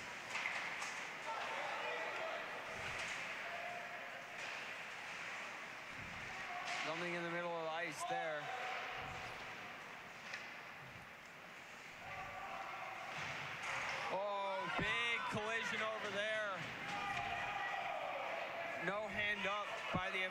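Ice hockey play in an echoing indoor rink: raised, shouting voices of players and bench around 7 seconds in and again from about 14 seconds, over a steady hiss, with a few sharp knocks of puck and sticks.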